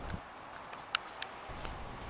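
Faint outdoor background with a handful of short, sharp ticks at irregular intervals. A low rumble comes up near the end.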